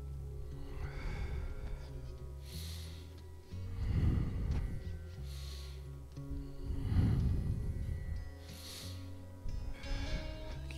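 A man's heavy breaths during prone back-extension lifts, coming every few seconds, over background music with a slow, steady bass line.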